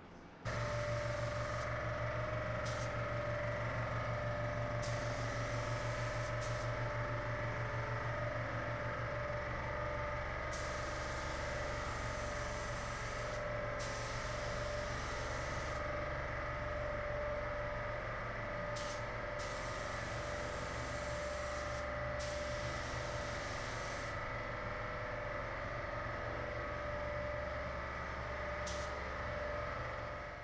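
Paint spray gun hissing in on-off passes of one to a few seconds each while dusting on silver basecoat, over a steady machine hum.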